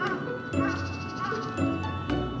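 Background music: a melody of short notes, about two a second, over a low bass line.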